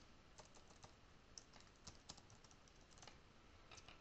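Faint computer keyboard typing: a run of light, irregular key clicks.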